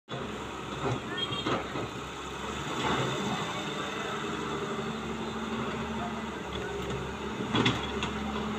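A Cat crawler excavator's diesel engine running steadily under load as the machine works its boom and bucket, with a few sharp knocks and clanks from the bucket and arm about a second in, again a little later, and near the end.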